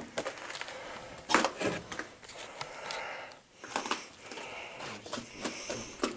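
Someone clambering up old wooden steps crusted with ice and snow: scattered knocks, scrapes and crunches of boots and knees on the boards and ice. The loudest knock comes about a second and a half in.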